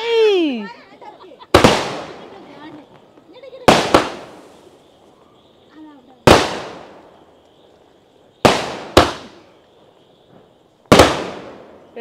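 Multi-shot aerial firework cake firing shells that burst overhead with sharp bangs, six in all, roughly every two seconds with one quick double near the end, each bang trailing off in an echo.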